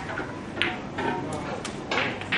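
Snooker balls clacking: the cue ball strikes a red about half a second in, followed by a few lighter knocks as the balls run on and the red drops into a corner pocket. Background chatter runs underneath.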